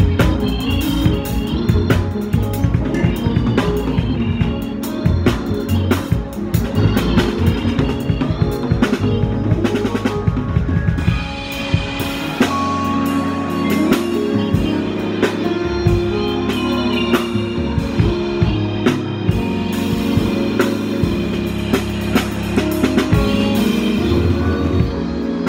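Live gospel band instrumental: drum kit playing busily with snare and bass drum under Hammond-style organ and keyboard bass. About halfway through the drumming thins out and held organ chords and a sustained bass carry on.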